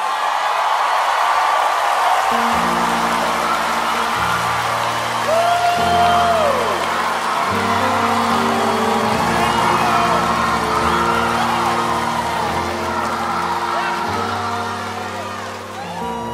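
Live worship-band music between sung lines: held keyboard chords that change every second or two over a stepping bass line, with a voice holding one long note about five seconds in and crowd voices calling out above.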